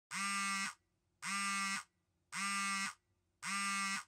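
Four identical buzzing electronic tones, each about half a second long and spaced about a second apart, each dipping slightly in pitch as it cuts off. The tones are fairly quiet.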